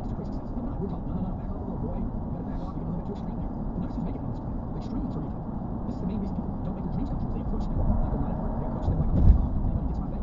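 Steady road noise inside a moving car's cabin on a highway: a low rumble of tyres and engine. A louder low thump comes about nine seconds in.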